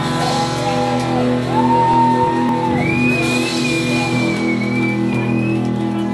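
Live rock band playing, with long held melodic notes gliding slightly in pitch over a steady accompaniment.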